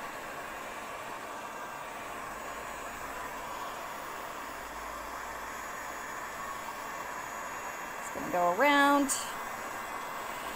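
Electric heat gun blowing steadily: an even rush of air with a faint whine. A short voiced sound from the woman comes about eight seconds in.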